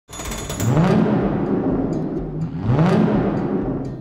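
Intro sting of two low swells, each about a second long, that rise and then fall in pitch, with a hissing wash over them.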